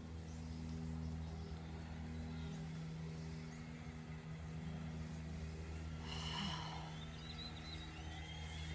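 A person breathing out audibly in a yoga stretch, one breath clearly heard about six seconds in, over a steady low hum.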